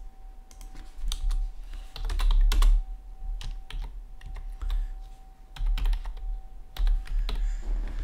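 Computer keyboard typing: irregular keystrokes typing out a short line of figures, with several heavier low thuds among them.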